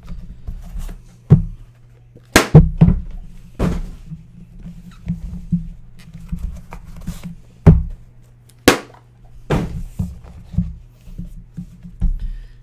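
Trading card boxes handled on a desk: a series of sharp knocks and thunks as the boxes are set down, moved and opened, with softer scuffing between them. A steady low hum runs underneath.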